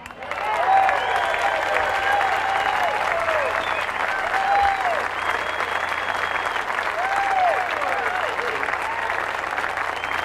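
Large audience applauding and cheering at the end of a jazz number, the clapping building over the first second and then holding steady, with shouted whoops and a few whistles over it.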